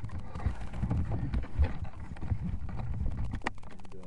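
Irregular knocks and thumps, with a sharper click about three and a half seconds in.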